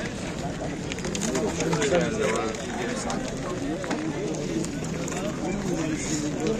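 Indistinct talking from people close by, with a laugh at the start; no other sound stands out above the voices.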